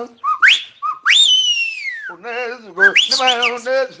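Igbo praise song. A high whistle-like tone sweeps up sharply, then a long one slides down over about a second. From about halfway through, a man sings with a wavering pitch.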